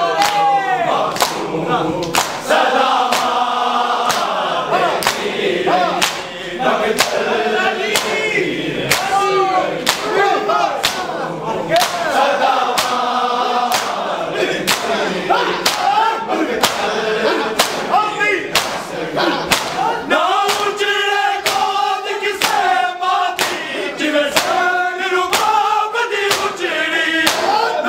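Men chanting a noha, a Shia mourning lament, in unison, over a steady rhythm of hands slapping bare chests in matam, about one and a half strikes a second.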